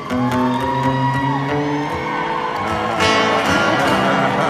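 Live band playing an instrumental passage of a slow country ballad, with guitar to the fore, heard through a large arena's sound system.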